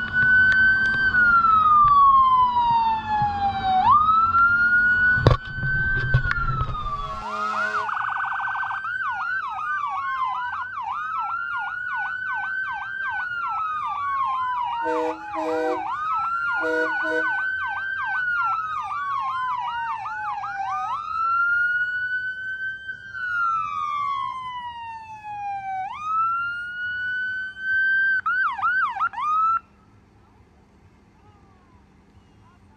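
Emergency vehicle electronic siren sounding: a slow rising-and-falling wail switches to a fast yelp, goes back to wail, and ends in a brief yelp before cutting off suddenly. Two pairs of short horn blasts sound in the middle, over the yelp.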